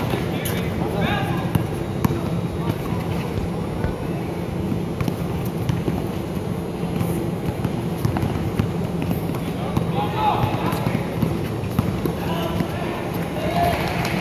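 Basketball game sounds in a large gym: a ball bouncing and players' feet on the court, with indistinct shouts and crowd chatter throughout.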